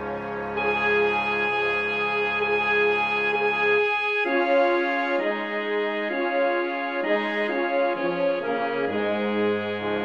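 Wind-band music played from the score: woodwinds and horns come in loud with accented notes about half a second in. Around four seconds in the low sustained part drops out and the melody carries on over lighter accompaniment.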